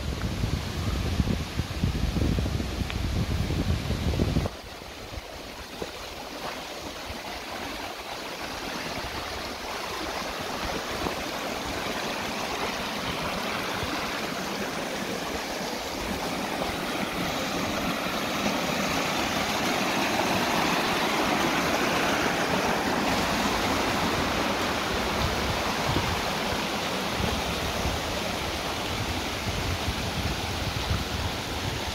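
Shallow stream running over rocks, a steady rush of water that swells louder toward the middle and then eases off slightly. For the first four seconds a heavy low rumble of wind on the microphone sits under it, then cuts off suddenly.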